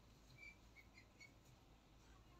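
Near silence: faint room tone, with four or five faint, short high chirps in the first half.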